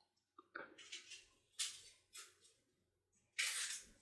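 Faint, short squishes and rustles from a plastic piping bag being squeezed as freshly whipped cream is pressed out through a star nozzle, several times, the longest near the end.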